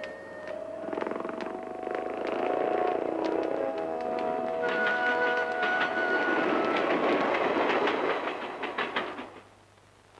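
Steam train passing, its rolling rush and rail clatter building and holding, with a steady whistle tone held through the middle, then fading away near the end.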